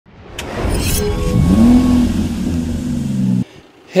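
Car engine sound effect in a short intro sting: the engine revs, its pitch rising over about half a second and then holding steady, before the sound cuts off abruptly about three and a half seconds in.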